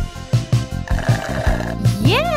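Bouncy children's-song backing music with a steady, quick beat. About a second in, a brief trilling sound effect joins for under a second.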